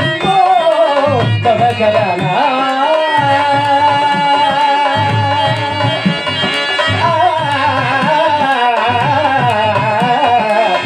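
Male stage actor singing a verse in a long, ornamented melody with drawn-out wavering notes, accompanied by tabla strokes.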